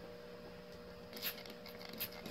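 Hand trigger spray bottle spritzing spot-cleaning solution onto carpet, two short hissing squirts, one just over a second in and one near the end, over a steady low hum.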